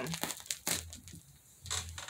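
Wrapping crinkling as a packaged blanket is handled, with a few sharp crackles in the first second and quieter rustling after.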